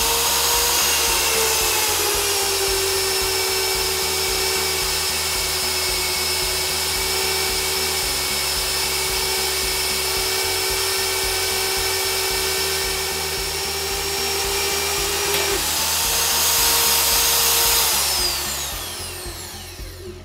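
Champion RB30 magnetic drill press motor spinning an annular cutter through steel plate, over background music. The motor whine drops in pitch under cutting load, rises again about fifteen seconds in as the load comes off, and winds down near the end as the drill is switched off.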